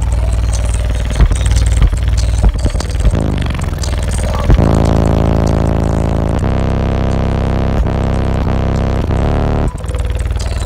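Bass-heavy music played loud inside a truck cabin through two FI Audio BTL 15-inch subwoofers in a sixth-order wall, driven by an Audio Legion AL3500.1D amplifier. A steady kick-drum beat runs through the first half, then a long sustained deep bass note takes over about halfway in and drops out briefly just before the end.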